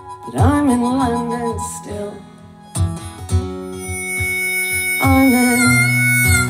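A live folk-rock band playing: strummed acoustic guitars over drums and bass, with a harmonica carrying the melody in bending phrases and one long held high note. The music drops briefly quieter just before the middle, then comes back in full.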